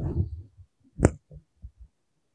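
A low rumble at the start, then a single sharp click just after a second in, followed by a few soft low thumps.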